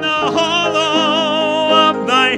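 Church hymn singing led by a song leader on a microphone: a new line starts just after a brief break and settles into one long held note with a wide vibrato.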